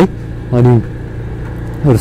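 Motorcycle engine running steadily while riding, a low even drone mixed with wind on the microphone.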